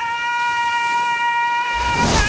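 One long, high note held at a steady pitch. A low rumble and a rushing swell come in near the end.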